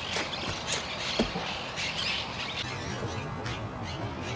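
Birds chirping and squawking over steady outdoor background noise, with a few short sharp sounds among them.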